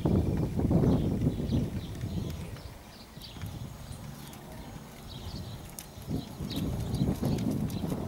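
A ridden horse trotting on a sand-and-gravel arena surface, its hooves making a run of dull thuds. The hoofbeats are loudest in the first two seconds and again near the end as the horse passes close, and fainter in between.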